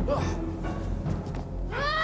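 A short pained cry from a man at the start, then near the end a woman's scream that rises and falls in pitch, over a low music score.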